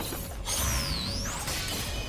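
Anime action sound effects: a high, whooshing zing that falls in pitch and then rises again about a second in, over a low rumble.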